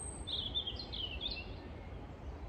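A small songbird sings a short phrase of quick warbling chirps from about a third of a second in to about halfway through, over a steady low background rumble of outdoor noise.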